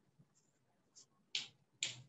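A faint click about a second in, then two sharp clicks about half a second apart.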